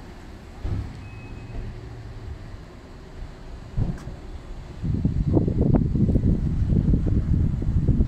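Wind buffeting the microphone: a low rumble that turns into a loud, uneven rumble about five seconds in.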